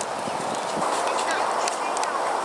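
Outdoor park ambience: indistinct voices of people talking at a distance, with short high chirps of small songbirds.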